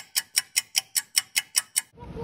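A clock-ticking sound effect over a time-skip title: fast, even ticks, about five a second, that stop just before the end.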